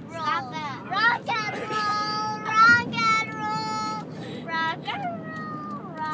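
A young girl singing in a high voice: short phrases, then long held notes in the middle. The low hum of a car's road noise runs underneath.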